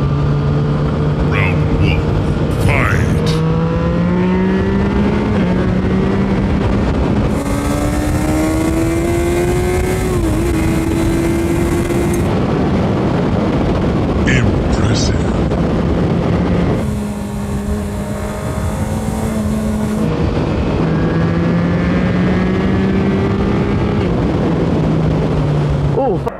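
Motorcycle engine heard from the bike while riding: its note holds steady, climbs in pitch several times as the bike accelerates through the gears, and drops back near the end as it slows.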